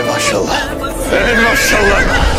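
A horse whinnying, with a wavering, quivering high call in the second half.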